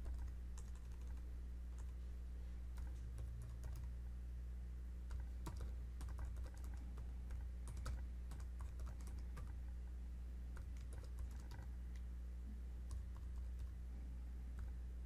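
Typing on a computer keyboard: irregular, unhurried keystroke clicks, over a steady low hum.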